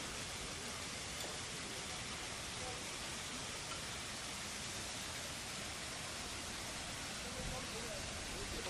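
A steady, even hiss at an unchanging level, with faint voices in the background.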